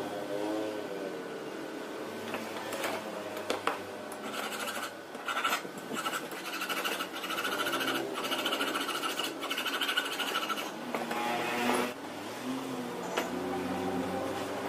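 Small metal starter-motor parts and hand tools clicking and scraping on a wooden workbench as the disassembled starter is handled. A steady high whine runs behind it from about four seconds in to about ten and a half seconds in.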